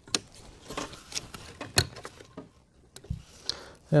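Small wire cutters snipping through a plastic cable tie on a mobility scooter's frame, heard as a few sharp clicks and handling sounds. The sharpest click comes a little under two seconds in, and a dull thump follows about three seconds in.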